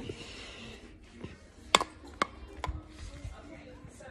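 A few sharp knocks or clicks about half a second apart near the middle, the first the loudest with a brief ring, over soft rubbing: a hard object and the phone being handled close to the microphone.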